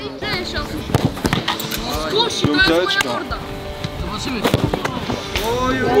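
Several sharp thuds of footballs being struck, scattered through the stretch, amid talking voices.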